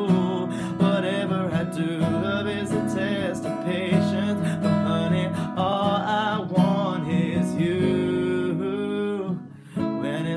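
Acoustic guitar played with a man singing over it, his voice holding long, wavering notes. The music drops away briefly just before the end.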